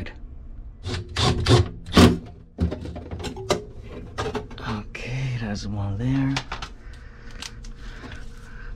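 Metal cover of a refrigerator's evaporator fan assembly knocking and clattering against the cabinet as it is lifted into place and lined up with its screw holes, with sharp knocks clustered in the first few seconds. A few low murmured vocal sounds follow near the middle.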